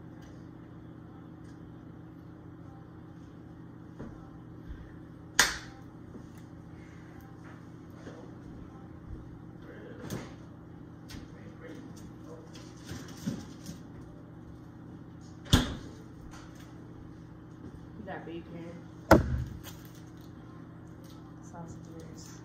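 Kitchen handling sounds: sharp knocks and clatter of doors and items being moved, three loud ones at about 5, 15 and 19 seconds, over a steady low appliance hum.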